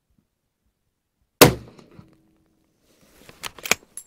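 A single rifle shot from a bolt-action Barrett MRAD in .300 PRC, fitted with a large muzzle brake: one sharp, loud report about a second and a half in, with a brief ringing tail. About two seconds later come a few quick metallic clicks as the bolt is worked.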